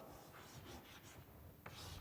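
Faint chalk scratching on a blackboard as an equation is written, with a single sharp click near the end.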